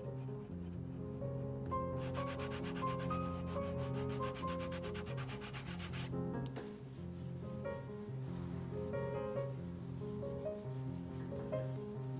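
Background music with held chords throughout. From about two to six seconds in comes a rapid rubbing as a cotton swab is worked over the surface of an oil painting.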